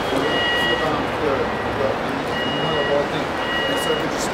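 Steady city street noise with traffic and faint distant voices. A thin, high, steady electronic tone sounds briefly near the start and comes back for over a second from about the middle.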